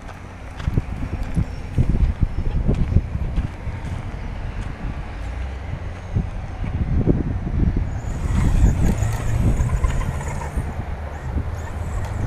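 Onboard sound of a remote-control 4x4 car driving over a bumpy dirt track: wind buffeting the microphone, with irregular jolts and rattles as the car hits bumps and loose dirt. The noise picks up about two seconds in.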